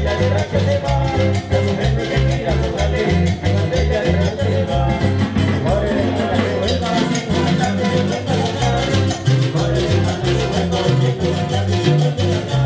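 Live band playing upbeat Latin American dance music on stage: strummed acoustic and small string guitars over a stepping electric bass line and a steady drum-kit beat.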